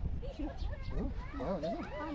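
A voice with wavering, rising-and-falling pitch, loudest in a sing-song stretch in the second half, over a steady low rumble of wind buffeting the microphone.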